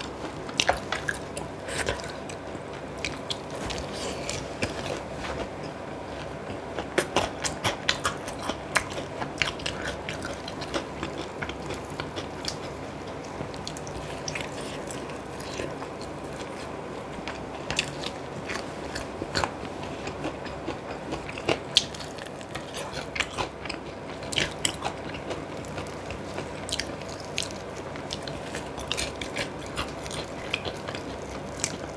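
Close-miked eating of sauce-coated spicy fried chicken: biting and chewing, with pieces pulled apart by hand. Many small sharp crackles and clicks come throughout.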